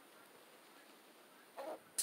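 Faint steady background hiss, with one brief soft sound near the end.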